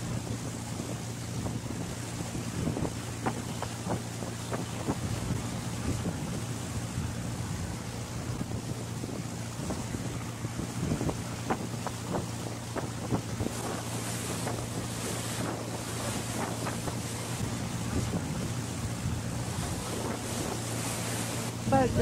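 A boat's engine running steadily with a low drone, under wind and water noise.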